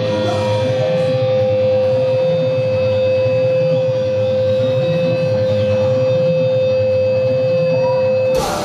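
Live rock band in a quieter passage of a song: an electric guitar holds one long, steady note above a dense, low wash of guitar and bass.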